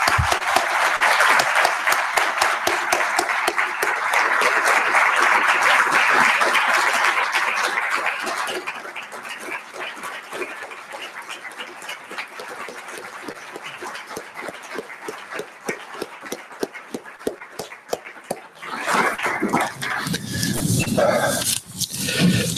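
Audience applauding in a lecture hall: full applause for about eight seconds, then thinning to scattered clapping.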